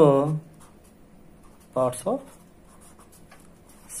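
Felt-tip pen writing on paper: faint, short strokes of the tip across the sheet, between two brief spoken words.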